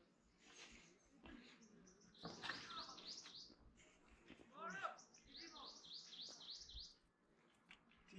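A bird singing two runs of quick, repeated high chirps, about five notes a second, the second run longer than the first.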